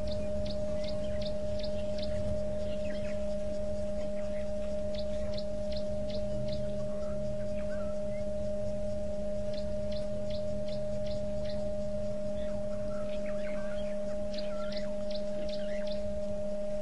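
A steady humming tone, the loudest sound throughout, with birds calling over it: four runs of five or six short high notes, about four a second, spaced a few seconds apart, plus softer scattered chirps.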